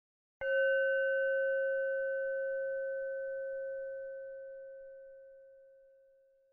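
A single struck meditation bell, about half a second in, ringing one clear steady tone with fainter higher overtones that slowly fades away over about six seconds.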